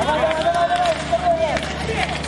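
A high voice shouting one long, drawn-out call lasting about a second and a half, over scattered clicks from hockey sticks and inline skates on the rink.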